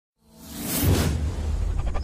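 Intro sound effect for an animated logo: a whoosh that swells in after a moment of silence, peaks about a second in and fades, over a steady deep bass rumble, with faint quick ticks near the end.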